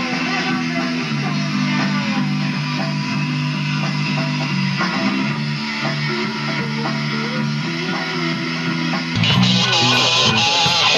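Electric guitar and bass guitar playing held rock chords, with sliding notes above. About nine seconds in, the sound gets louder and brighter.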